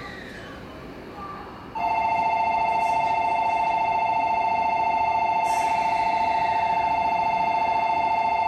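Electronic platform departure bell starting about two seconds in and ringing steadily at one unchanging pitch, the signal that a train is about to leave the station.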